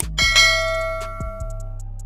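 A bell chime sound effect rings once, a bright ding that fades away over about a second and a half, over background music with a steady beat.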